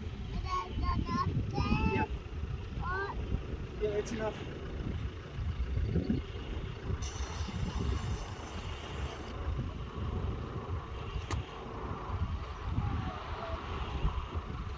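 Wind buffeting the microphone in a constant, uneven low rumble, with a child's high voice calling out briefly in the first few seconds.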